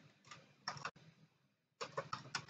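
A few faint clicks from a computer keyboard, a short cluster a little before the middle and another near the end.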